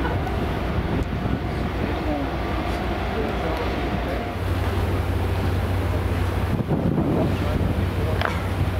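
A steady low drone of the ferry's engines under wind on the microphone on the open deck, the drone growing louder about halfway through.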